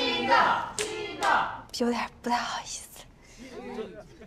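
Voices of a party crowd calling out, with a few hand claps about two seconds in.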